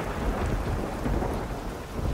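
Steady, dense rain-like noise with a low rumble underneath, like heavy rain and thunder.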